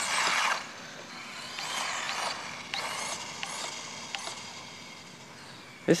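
Small electric RC truggy (Animus 18TR) driving on asphalt: its motor gives a faint whine that rises and falls with the throttle, with a few light clicks. A short rush of noise opens the stretch.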